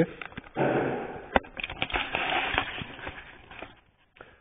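Handling noise from a camera phone being turned round in the hand: rustling with a few sharp clicks and knocks that fade out near the end.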